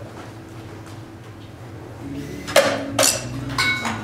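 Small motor in a homemade alarm clock running briefly, then two sharp clacks about half a second apart and a short clink as the alarm time is reached and the mechanism pushes the wooden puzzle up out of the housing.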